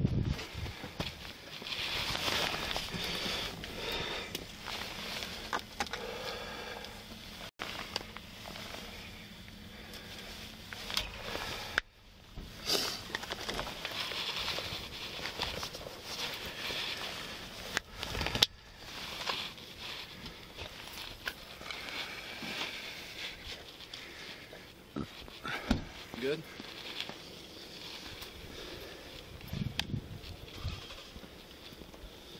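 Rustling and handling noise on a body-worn camera as the officer moves about the patrol car, with indistinct voices in the background and a few sharp knocks.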